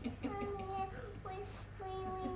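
A young child singing a few long, held notes with no clear words.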